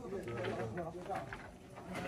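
People's voices talking at moderate level, with no saw running.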